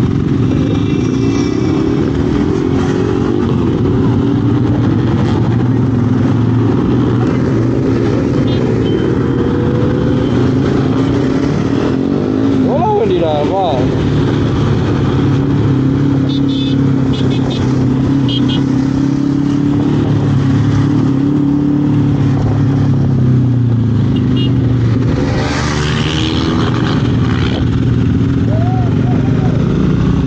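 Motorcycle engine running under way, its note rising and falling with the throttle, over steady wind and road rush.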